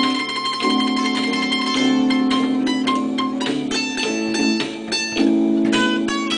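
Improvised blues played on mandolin with a small electronic keyboard: plucked notes over sustained keyboard chords.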